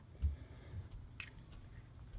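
Quiet handling sounds as an egg is emptied from its shell into a saucepan of melted butter: a soft low thump, then one sharp click just after a second in.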